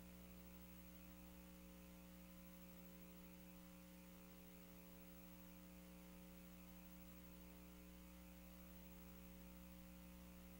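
Near silence: only a faint, steady electrical hum.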